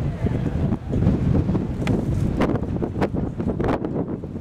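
Wind buffeting the camcorder's microphone, a loud low rumble with several sharp crackles in the second half.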